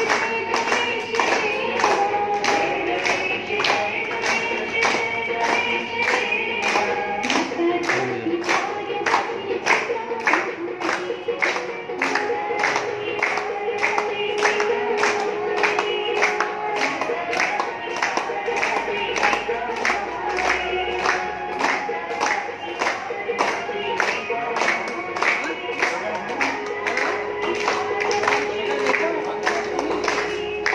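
Devotional aarti hymn sung by voices, with hand-clapping kept in time at about two claps a second.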